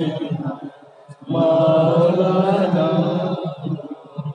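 A man's voice chanting a devotional Islamic song, dipping briefly and then holding one long note for about two seconds.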